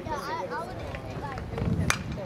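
Background voices of spectators, then one sharp smack near the end as the pitched baseball arrives at home plate on the batter's swing.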